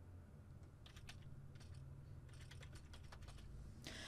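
Faint computer keyboard typing: a short run of keystrokes about a second in, then another quick run between two and three seconds in.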